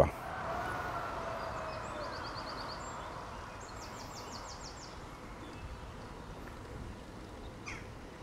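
Quiet outdoor background hiss, with two short, rapid trills from a bird high in pitch, about two and four seconds in.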